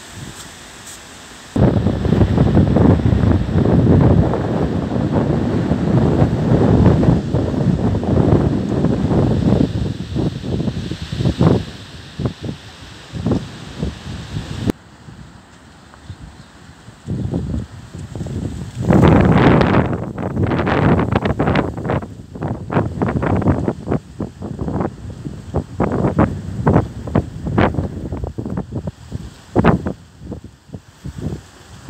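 Strong, gusty wind buffeting the microphone: loud low-pitched blasts that ease off about halfway through, then come back in many short, sharp gusts.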